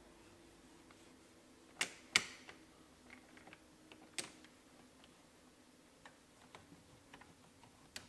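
Dashboard toggle switches of a Jaguar E-Type clicking as a cloth is wiped over and around them: two sharp clicks about two seconds in, another about four seconds in, and fainter ticks after.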